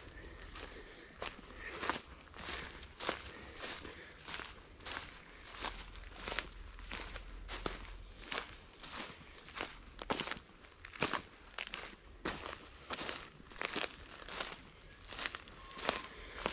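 Footsteps on a forest floor of dry pine needles and leaf litter, at a steady walking pace of about three steps every two seconds.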